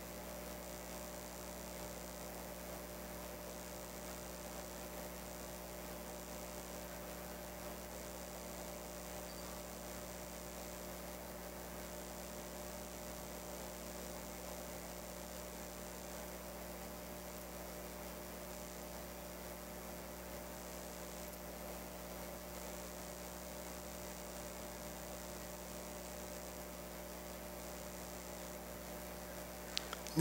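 Steady electrical mains hum with faint hiss, unchanging throughout, with no other sound.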